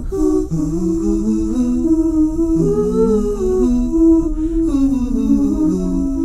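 Wordless a cappella humming: a slow melody of held notes with two or three voice parts moving together in harmony, and no instruments or beat.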